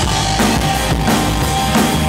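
Rock band playing live: two electric guitars, bass guitar and drum kit, loud and dense, with the drums keeping a steady beat.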